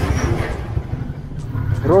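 Motorcycle engine running at low road speed, heard from the rider's seat, with a steady low pulse under road and wind noise.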